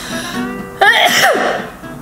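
A woman sneezes once, a sudden loud burst about a second in, over background acoustic guitar music.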